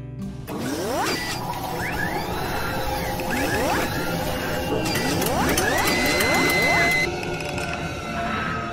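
Synthetic sound effects for an animated logo: three rising whooshing sweeps over a dense bed of mechanical clicking and clanking, with music mixed in. A high held tone near the end cuts off.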